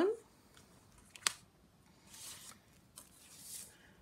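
Handmade cardstock greeting cards being handled on a tabletop: a single sharp click a little over a second in, then two soft papery swishes.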